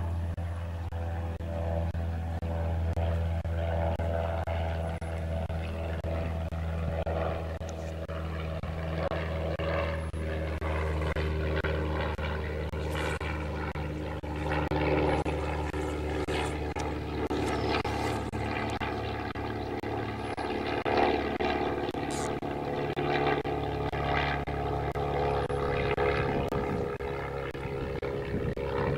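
A steady engine drone whose pitch drifts slowly up and down, with a few brief clicks in the second half.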